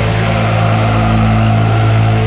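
Sludge/post-metal music: distorted guitars and bass holding a low, sustained chord under a dense wash of noise.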